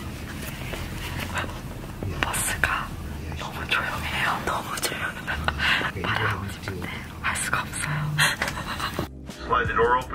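A woman whispering over background music.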